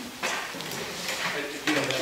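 Indistinct talk among a few people in a meeting room, with papers being handled.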